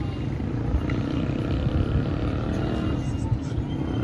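Street traffic in a busy town heard from above: a steady, low rumble of vehicles.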